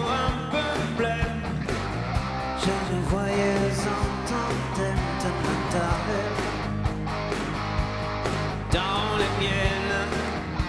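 Live band playing a pop-rock song, with guitars over a steady drum beat.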